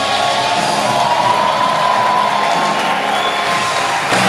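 Large concert crowd cheering and whooping while the rock band's last notes hold and ring out at the close of a song.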